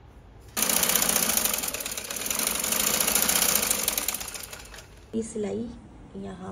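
Sewing machine running at speed, stitching a fabric strip onto a trouser cuff. It starts abruptly about half a second in, dips briefly, then eases off and stops about five seconds in.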